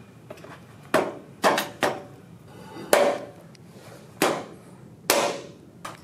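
About seven sharp, irregular knocks and clanks, each with a short ring, from the steel frame and wooden top of a desk being put together by hand.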